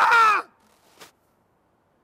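A man screaming at full voice, a raw, strained cry that falls in pitch and breaks off abruptly about half a second in, followed by near silence with one faint click.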